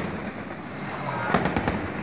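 Gunshots cracking and echoing down a street over a steady noisy background, with a quick cluster of shots a little past halfway.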